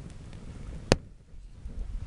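A single sharp crackle from a campfire about a second in, over faint low background noise.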